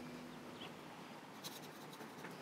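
Acoustic guitar background music fading out in the first moments, then faint quiet with a single sharp click about one and a half seconds in.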